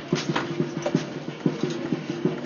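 Tabla being played: a steady run of sharp strokes, about four a second, with the right-hand drum ringing at one pitch.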